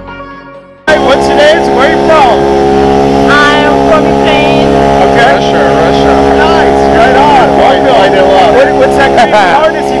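A short fade of music, then, about a second in, a loud, steady engine drone starts and holds, with voices talking over it.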